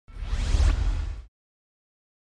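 Whoosh sound effect for a logo intro: a rising sweep over a deep low rumble, lasting a little over a second before it cuts off suddenly.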